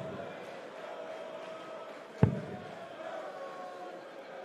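A steel-tip dart strikes the bristle dartboard with a single sharp thud about two seconds in, the second of a three-dart visit. An arena crowd hums steadily underneath.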